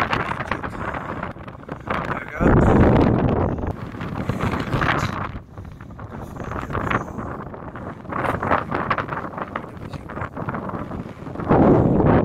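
Wind buffeting a phone microphone in gusts, with a strong low rumbling blast about two and a half seconds in and another near the end, over steady rustling and handling noise.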